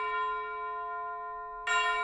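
A bell-like chime rings and slowly fades, then is struck again near the end and rings on.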